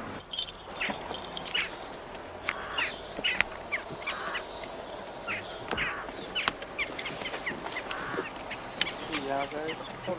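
Birds calling over and over in short chirps, with a few sharp clicks and a brief voice near the end.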